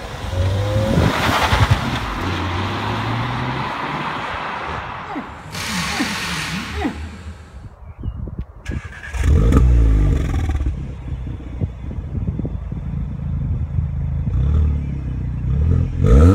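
SEAT Leon Cupra 280's 2.0-litre turbo four-cylinder accelerating past with road noise. About nine seconds in, heard from behind its Milltek non-resonated cat-back exhaust, the engine flares loudly with rising revs and settles into a steady idle.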